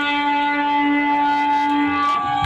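Electric guitar ringing out through its amplifier in one steady, sustained tone, with the drums stopped, as a song ends.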